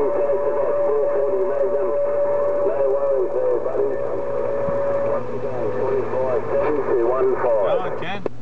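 A distant station's voice coming through the HR2510 radio's speaker, garbled and unintelligible with band noise, thin and cut off above the mid tones. A steady whistle runs under it and stops about five seconds in.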